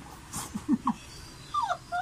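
Muffled whimpering and squealing laughter from a person with a mouth stuffed full of marshmallows: a few short low sounds, then high falling squeals near the end.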